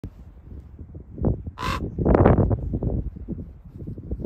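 Ravens calling: a short series of croaking caws, the loudest about two seconds in.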